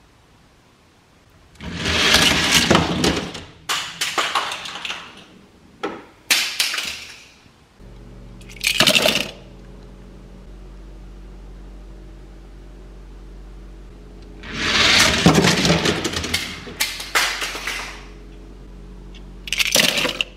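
Die-cast toy cars clattering in several bursts: a heat rolling down a four-lane plastic track, then cars clinking as they are dropped and rummaged in a cardboard box. A steady low hum comes in about eight seconds in.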